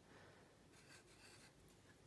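Near silence, with the faint scratch of a pencil writing a number on a paper strip.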